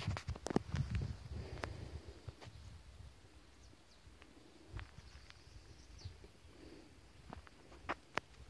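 Footsteps and handling clicks from someone walking with a handheld phone on a dirt farm track, with wind rumbling on the microphone over the first couple of seconds. Faint bird chirps now and then.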